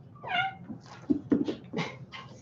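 A kitten meows once, a short high-pitched call, then several short knocks and scuffles follow over the next second.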